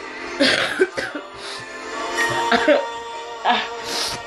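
Background music of steady sustained chords, with a woman coughing and clearing her throat a few times.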